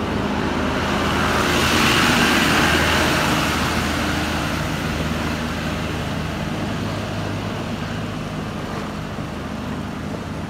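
A truck drives past through deep floodwater, its engine running and the water rushing and splashing around its wheels. It is loudest about two seconds in and fades as the truck moves away.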